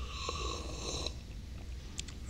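A man slurping a sip from a ceramic mug, an airy drawn-in sound lasting about a second.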